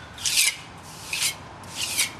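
Three short, scratchy scraping strokes of a hand-held tool against the underside of a concrete bridge deck affected by concrete rot, each lasting a fraction of a second and spaced about two-thirds of a second apart.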